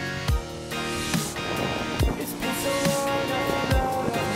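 Background music with a steady beat and a deep kick drum under sustained tones.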